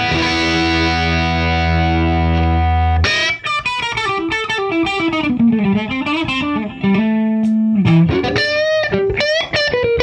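Boosted, overdriven electric guitar, a Music Man Valentine played through a T-Rex Karma boost pedal that is switched on. A chord rings for about three seconds, then a single-note lead line with string bends follows.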